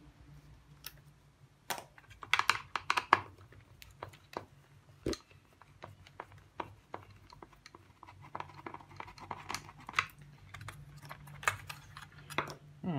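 Screwdriver and fingers working on an electric shower's wiring inside its plastic housing: scattered small clicks and plastic rattles, in clusters about two seconds in and again through the last four seconds, with one sharper knock about five seconds in.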